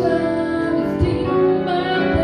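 A young girl singing into a microphone with piano accompaniment, holding long notes.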